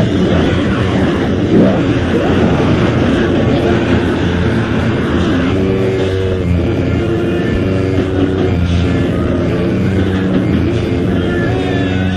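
Lo-fi tape recording of a band playing extreme metal: heavily distorted guitar and drums blurred into a dense, steady noise, with sustained chord tones showing through about halfway in.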